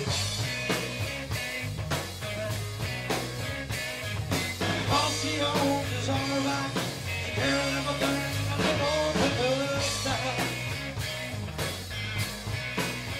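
Live blues-rock band playing: a harmonica cupped to a hand-held microphone carries the lead, its notes bending up and down, over electric bass and drums.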